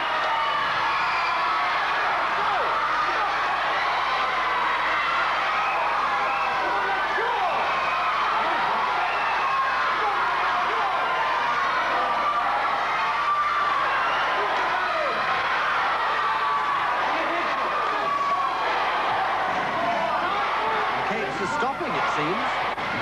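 Audience shouting and cheering, many voices at once, kept up steadily as two strongmen strain to bend steel bars, with a few sharp knocks near the end.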